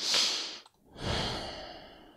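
A person breathing out audibly twice, like sighs: a short breath right at the start and a longer one about a second in that fades away.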